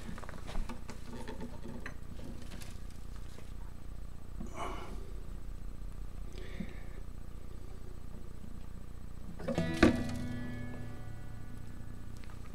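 Acoustic guitar being handled, with faint rustles and small knocks on its wooden body. About ten seconds in, a sharper knock sets the open steel strings ringing for about a second.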